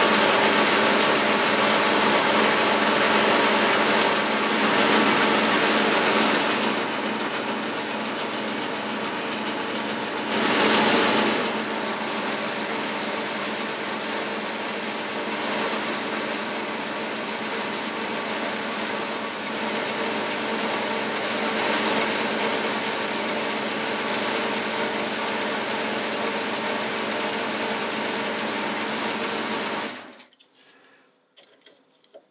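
Boxford lathe running with a boring bar cutting inside a spinning workpiece: a steady hum of motor and gearing with cutting noise over it. It is louder for the first several seconds and in a brief swell about ten seconds in, and stops abruptly at the very end.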